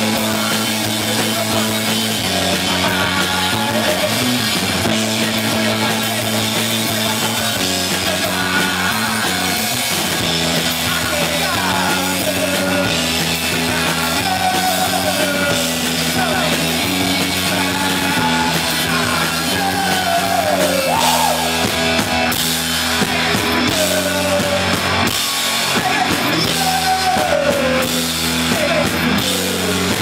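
Garage rock band playing live and loud: distorted electric guitar, bass guitar and drum kit. From about the middle on there are sliding, bending lead lines over a repeating low riff.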